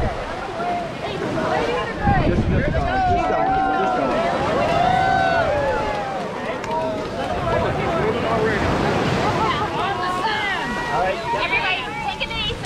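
A large crowd of onlookers talking and calling out over one another, no single voice clear, with wind buffeting the microphone in gusts underneath.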